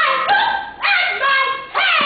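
A crowd shouting in short, high, bark-like calls that fall in pitch. The calls break off briefly about a second in and again near the end.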